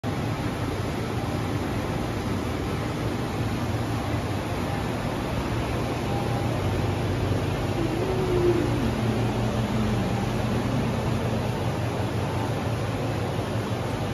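Industrial water chillers and cooling fans of a water-cooled LED UV curing system running: a steady rushing drone with a low hum underneath.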